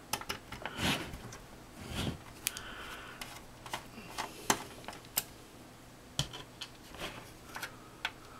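Small screwdriver turning screws out of a Dell Wyse 5010 thin client's metal chassis: irregular small clicks and short scrapes of metal on metal, with a few sharper ticks about halfway through.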